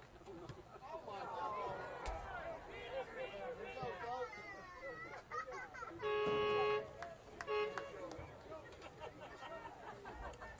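Voices of players and spectators shouting at a football game, then a horn blasts once for most of a second, about six seconds in, with a second short blast about a second later.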